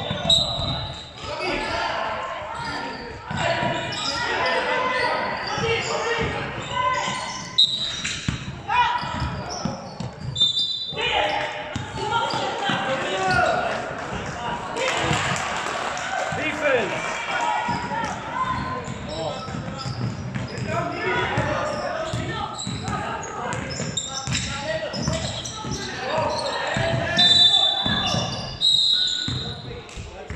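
Youth basketball game in a large, echoing gym: a basketball bouncing on the hardwood court amid players' and spectators' voices. Short, shrill referee whistle blasts sound a few times, the strongest near the end calling a foul.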